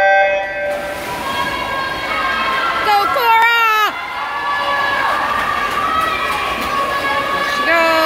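Electronic swim-start signal sounding one short steady tone, then swimmers splashing off the wall in a backstroke race while spectators cheer and shout, with loud yells about three seconds in and again near the end.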